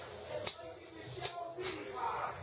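Two sharp clicks about a second apart over faint, low speech.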